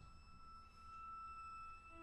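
A single faint, high, sustained note held steadily by an instrument of a small chamber ensemble, almost as pure as a sine tone.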